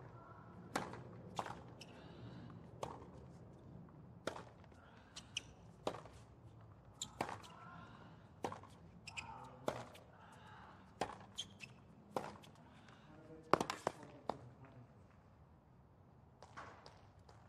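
Tennis ball struck by rackets and bouncing on a hard court during a rally opened by a serve: sharp hits, about one a second and sometimes two in quick succession, the loudest one a little past the middle.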